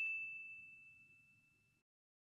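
The ringing tail of a single high, bell-like ding from a logo sound effect, a clear tone with a few overtones fading out within about the first second.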